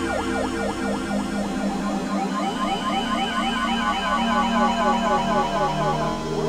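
Eurorack modular synthesizer playing glitchy electronic music: a fast repeating figure of short pitch glides, several a second, over sustained tones. The glides fall in pitch at first and rise in pitch from about two seconds in. A low drone drops out early on, and a new low tone comes in around four seconds.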